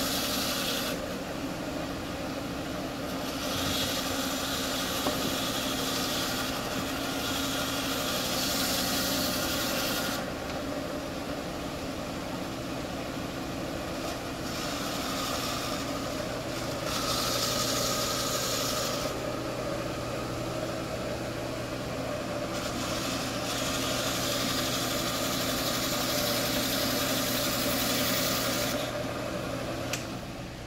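Small tabletop coral band saw running with a steady motor hum, its blade cutting through Duncan coral skeleton in repeated passes: a rasping hiss that starts and stops, in stretches of a few seconds each.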